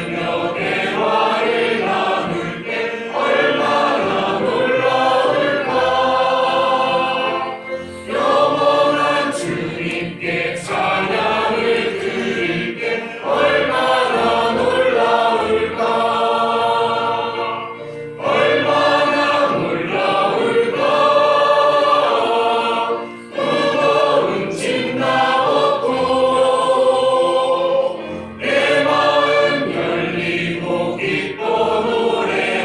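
A group of voices singing a Korean congregational hymn line by line, with short breaks for breath between the phrases.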